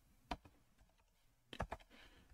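Faint, sparse keystrokes on a computer keyboard: a single key press about a third of a second in, then a quick run of three or four near the end.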